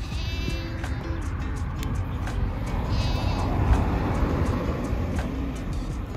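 Lambs bleating: two high, wavering calls, one at the start and one about three seconds in. Under them a low rumble swells and fades.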